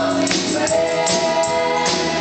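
Live gospel worship music: a worship leader and congregation singing held notes with a band, a hand percussion beat shaken steadily along.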